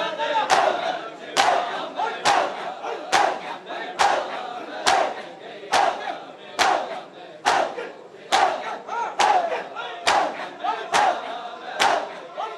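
A crowd of Shia mourners performing matam, slapping their bare chests in unison in an even beat a little faster than once a second. Between the strikes, the crowd's voices shout together.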